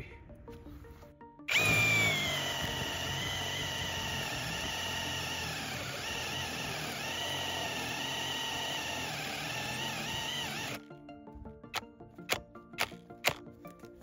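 Cordless hammer drill (Parkside Performance PSBSAP 20-Li C3) starting about a second and a half in and boring a 35 mm hole into wood at high speed. Its motor whine dips slightly in pitch now and then under load, then stops abruptly about eleven seconds in: the drill has stopped in the cut. A few sharp clicks and knocks follow.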